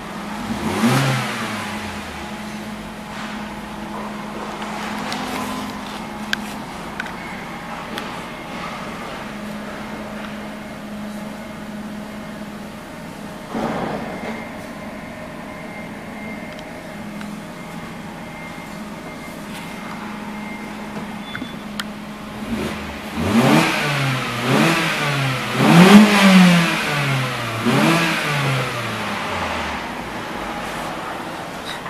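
Mazda 3's 2.0-litre PE four-cylinder petrol engine idling steadily, blipped once about a second in and again about halfway. Near the end it is revved up and down several times in quick succession, the loudest part.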